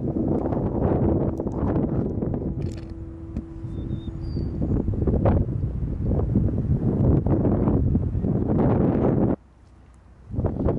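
Wind buffeting the camera microphone in uneven gusts, with a steady low hum under it for the first few seconds. It cuts off suddenly near the end.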